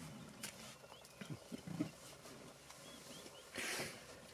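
An African elephant at a mud wallow: a few faint low grunts, then near the end a short, loud hissing rush as it blows mud out of its trunk over its back.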